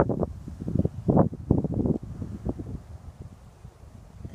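Wind buffeting the microphone in irregular gusts, strongest in the first two seconds and dying down to a low rumble after that.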